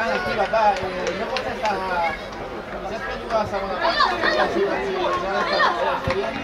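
Several voices talking and calling out over one another, with no single clear speaker.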